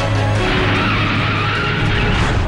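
Dramatic background music with a car-skid sound effect laid over it: a screeching hiss that swells about half a second in.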